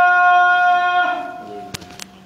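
A man's voice holding one long note of the adhan, the Islamic call to prayer, which fades out about a second and a half in as the call ends. A sharp click follows near the end.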